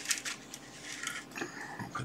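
Faint clicks and light rattling of small tools and parts being moved about by hand in a plastic organizer drawer.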